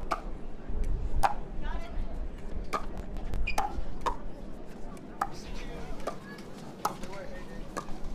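Pickleball paddles striking a plastic ball back and forth in a rally: a string of sharp pocks at uneven intervals, roughly one a second.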